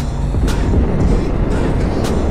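Wind rush and road noise of a motorcycle cruising at highway speed, heard from a handlebar-mounted camera, with background music laid over it.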